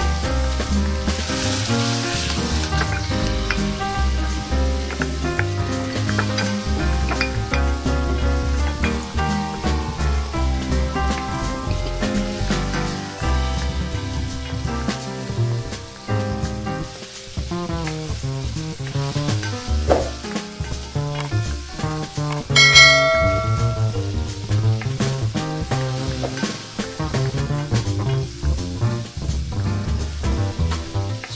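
Chopped banana peel, onion and pepper sizzling as they fry in oil in a pan over low heat, under background music with a steady bass. A bright ringing tone stands out about two-thirds of the way through.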